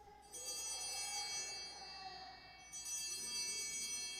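Altar bells (a cluster of small hand bells) shaken twice, about two and a half seconds apart, each ring fading slowly. They mark the elevation of the consecrated chalice at Mass.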